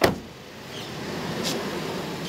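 A car door on a Toyota Innova slams shut with one loud thud at the start. The car's steady running sound then grows louder as it moves off, with a sharp click about a second and a half in.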